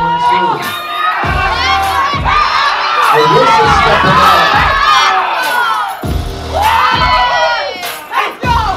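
Crowd of spectators shouting and cheering, loudest midway, over hip hop music with a steady thudding beat.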